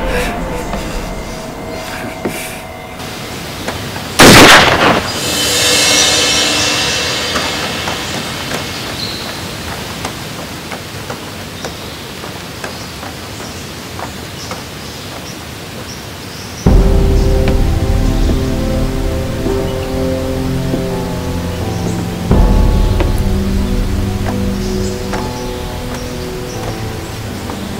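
Dramatic background music with one loud, short shotgun blast about four seconds in, followed by a fading hiss. Later the music grows louder with deep bass notes, in two steps.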